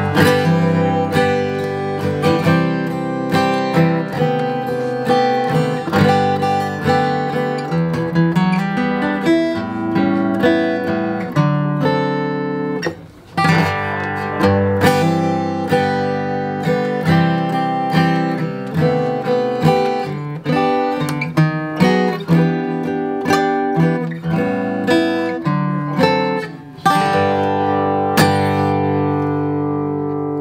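2018 Martin D-41 dreadnought acoustic guitar, spruce top over rosewood back, played with a flatpick: strummed chords and picked notes throughout, with a brief break about thirteen seconds in. It ends on a chord left to ring.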